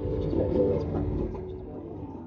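A pigeon cooing, loudest in the first second or so, over a steady low background hum.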